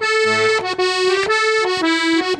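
Accordion playing a short instrumental phrase of held notes that change every half second or so, over a light steady beat, in a folk song.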